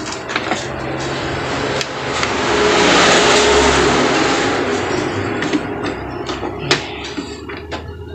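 Epson L3210 ink-tank printer running its power-on initialisation: motors and gear train whir, swelling to a loud mechanical rush about three seconds in and easing off, with scattered clicks. It is a test start-up after cleaning the sensor behind the 000043 error.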